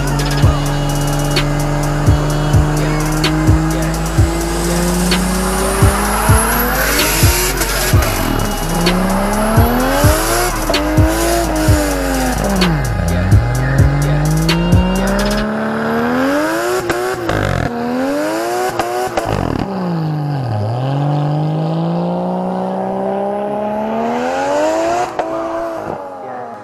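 Single-turbo Toyota Soarer doing a burnout: the engine climbs in revs over the first several seconds, then revs up and drops again and again while the tyres spin and squeal. Background music with a steady beat runs under it and stops about halfway through.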